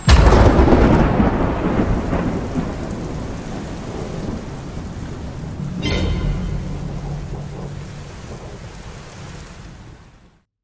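Thunder with rain: a loud clap right at the start rolls away, a second clap comes about six seconds in, and the rain and rumble fade out near the end.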